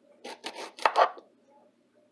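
Kitchen knife slicing through a cucumber with the skin on: about four quick cuts, the loudest two close together about a second in.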